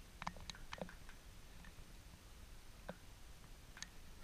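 Faint, short clicks and taps from a plastic solar power bank being handled: a quick run of about four in the first second, then two single clicks near the end.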